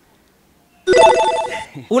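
A short electronic ringtone-like jingle: a quick run of electronic notes lasting under a second. It starts sharply about a second in, after near silence.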